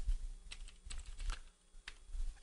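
About half a dozen faint, irregular clicks of typing on a computer keyboard.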